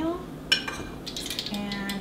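Metal measuring cup clinking against kitchenware while almond meal is scooped out: one sharp clink about half a second in, then a few lighter clicks.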